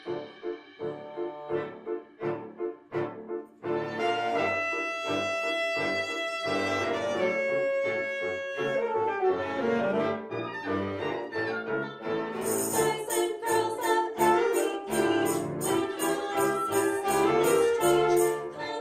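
Live chamber ensemble of piano, strings, woodwinds and brass playing an instrumental arrangement: short detached notes at first, then held chords from about four seconds in. About twelve seconds in, bright, regular percussion strikes join in.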